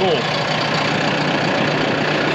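John Deere 5090E tractor's four-cylinder diesel engine idling steadily.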